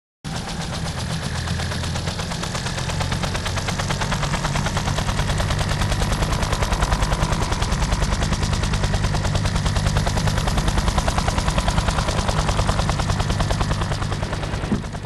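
Battle sound effect: a rapid, even chopping pulse over a low steady drone, starting abruptly and growing slightly louder over the first few seconds.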